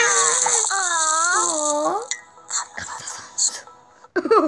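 A high voice making a long, wavering, sing-song sound for about two seconds, over light music, then a quieter stretch with a few short sounds.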